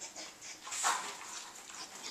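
Dogs nosing and eating scraps and paper off the floor: short, scattered sniffing and chewing sounds, the loudest about a second in.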